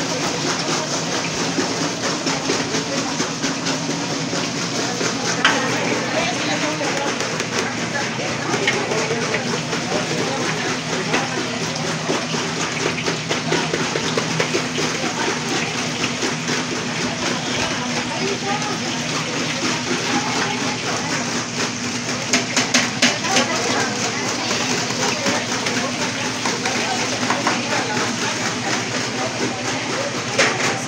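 Steady crackling sizzle of salt-cod batter fritters frying in a large pot of hot oil, under indistinct chatter of several voices.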